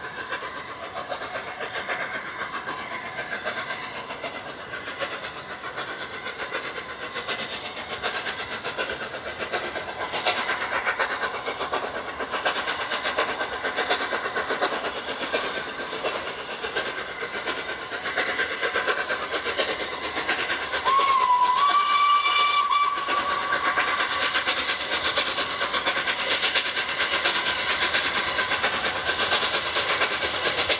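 LNER A3 Pacific Flying Scotsman, a three-cylinder steam locomotive, approaching with its train, its exhaust beats and running noise growing louder as it nears. About 21 seconds in it sounds its whistle, one note held for about two seconds after a brief waver at the start.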